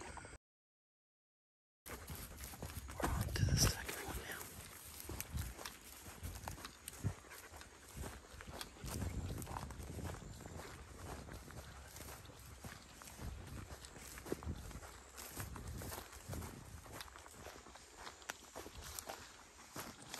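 Hurried footsteps through grass and brush, with scattered animal calls from the dogs and hog, loudest about three to four seconds in. The sound cuts out completely for over a second near the start.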